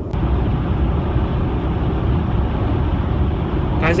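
Steady road and wind noise heard inside a Tesla Model X cabin at freeway speed. A short click comes at the very start.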